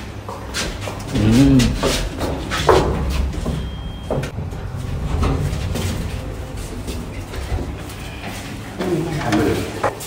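Passenger elevator car travelling: a steady low rumble that eases off about eight seconds in as the car stops. A brief high beep sounds about four seconds in.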